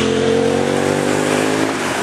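Street traffic: a passing motor vehicle's engine hum that slowly drops in pitch and fades out near the end, over steady road noise.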